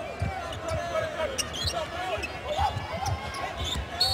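A basketball being dribbled on a hardwood court, bouncing about twice a second, with a few short sneaker squeaks over the murmur of an arena crowd.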